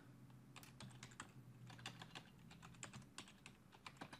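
Faint typing on a computer keyboard: a quick, irregular run of key clicks as a short search phrase is typed.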